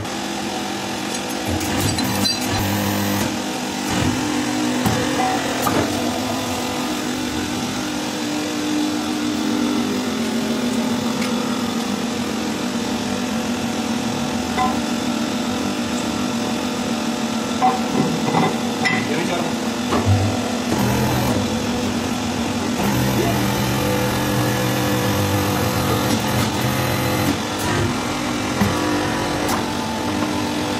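Hydraulic press machinery running with a steady low hum, with a few sharp metal knocks as its stacked steel dies are handled.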